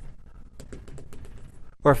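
A quick, irregular run of light clicks and taps from writing on a board, as the lecturer draws track lines and hit marks.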